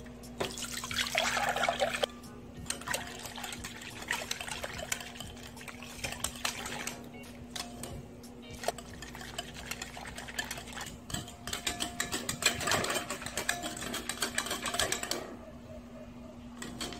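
Liquid poured into a glass bowl for a second or two, then a metal wire whisk beating the wet batter ingredients (buttermilk, eggs, oil) by hand: rapid ticking of the wires against the glass with sloshing, in uneven surges. A steady faint hum sits underneath.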